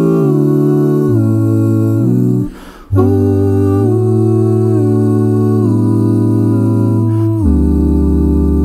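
Male a cappella ensemble humming sustained chords in close harmony, the chords changing in steps over a low bass line. The voices break off briefly about two and a half seconds in, then resume, and the bass drops lower near the end.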